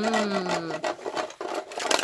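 Plastic toy saw rasping back and forth against a metal door hinge in quick, repeated strokes, with a woman's hum over the first second.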